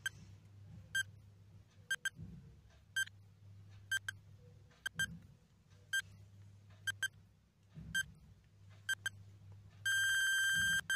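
Countdown timer sound effect: short electronic beeps, some doubled, about once a second as the timer counts down from ten, over a faint low hum.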